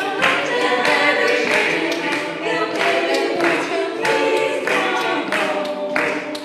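A small mixed-voice group (bass, tenor, alto and two sopranos) singing unaccompanied in parts.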